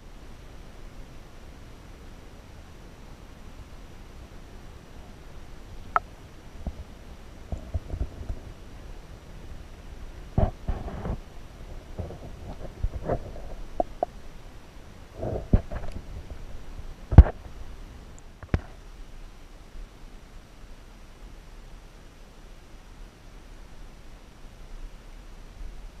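Muffled sound through a GoPro held underwater: a low rumble of water on the camera housing, with scattered knocks and clicks as it is handled and bumped, the loudest about seventeen seconds in.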